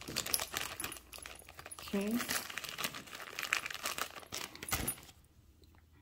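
Jewelry clinking and rattling as it is handled, a quick run of small metallic and bead clicks with some rustling, dying down about five seconds in.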